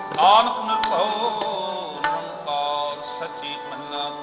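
Harmonium playing sustained melody notes with tabla strokes, an instrumental stretch of Sikh kirtan between sung lines.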